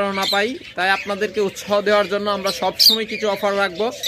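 Rosy-faced lovebirds giving a few short, high chirps and squawks over a man talking.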